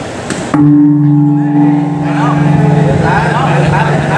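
A large gong struck once about half a second in, its deep steady hum ringing on as people's voices return.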